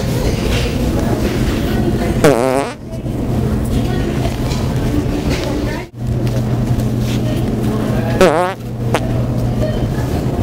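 Two fart noises from The Pooter, a hand-held fart-sound toy, each lasting about half a second with a wavering pitch: one about two seconds in and one near the end. Steady hum and chatter run underneath.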